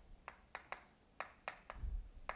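Chalk tapping on a chalkboard while a word is written, making about six sharp, unevenly spaced clicks.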